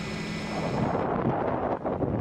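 Steady low rumbling background noise, with a low hum that fades out about half a second in.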